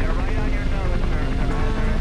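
Helicopter in flight, its rotor and turbine engine running steadily.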